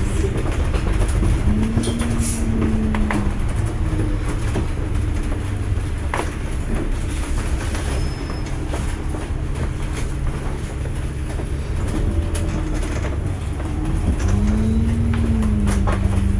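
A moving bus heard from inside: the engine drones steadily, with a whine that rises and falls about two seconds in and again near the end, while the bodywork and fittings give off scattered rattles and knocks.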